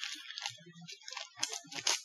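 Clear plastic packaging bag crinkling and rustling as it is pulled open by hand. The crackles are irregular, with a couple of sharper ones near the end.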